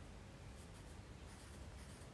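Faint scratching of a pencil writing numerals on a paper textbook page.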